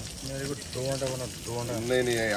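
Eggs sizzling steadily in a non-stick frying pan, under a voice talking in short phrases.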